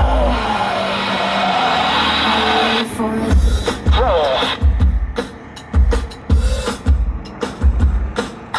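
Background music: a sustained rushing build-up for about the first three seconds, then a song with a steady drum beat.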